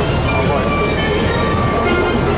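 Loud, steady city street noise: a continuous traffic rumble with mixed voices from passers-by.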